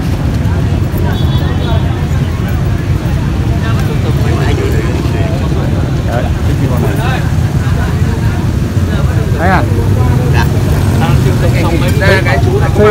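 Outdoor street-market ambience: scattered background voices over a steady low rumble.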